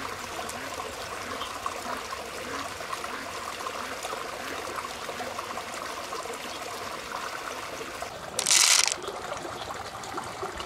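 Shallow stream trickling steadily, with small light clicks of mussel shells and pearls being handled. About eight and a half seconds in, a loud hiss lasts about half a second.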